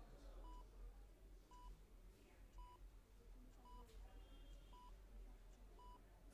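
Hospital patient monitor beeping faintly, one short beep about every second, over a low hum.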